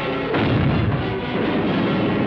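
Film battle sound effects of cannon and gunfire over background music, with a loud blast about a third of a second in.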